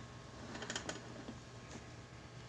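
A few light, irregular clicks and taps of kitchen utensils or containers being handled, bunched together just under a second in, over a faint low hum.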